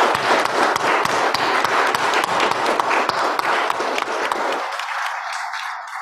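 Congregation applauding, many hands clapping together, the applause dying away near the end.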